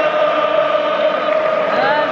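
Football stadium crowd singing a chant together, holding one long note, with a short rise in pitch near the end.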